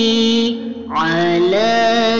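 Sholawat, an Arabic devotional chant in praise of the Prophet Muhammad, sung by a single voice. It holds one long note, breaks off briefly about half a second in, then slides upward into the next phrase.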